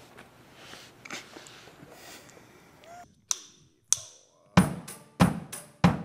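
Drum kit starting a steady beat, a heavy kick-and-snare hit with cymbal about every 0.6 seconds. It comes in after two sharp clicks at the same tempo, a drumstick count-in.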